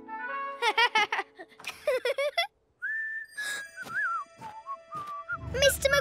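Cartoon soundtrack: a few short squeaky vocal sounds, a brief moment of silence, then a whistle that holds a high note and steps down in pitch over a couple of seconds, with background music coming in near the end.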